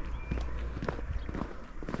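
Footsteps of hikers walking at a steady pace on a tarmac footpath, over a low steady rumble.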